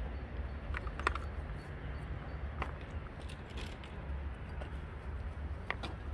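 Quiet outdoor background: a steady low rumble with a few faint, scattered clicks and ticks.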